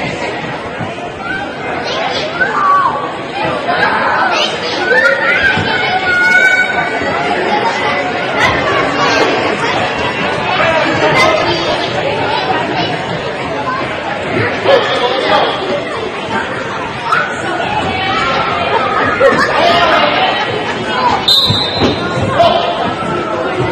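Many overlapping voices chattering and calling out in a large gymnasium.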